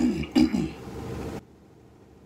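A person's voice making two short non-word sounds in quick succession, each falling in pitch. About a second and a half in, the background room noise cuts off abruptly.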